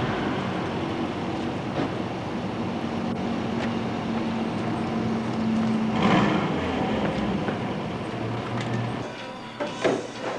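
Loud, steady rumbling noise with a low drone running through it, cutting in suddenly; a short swooping sound near the end.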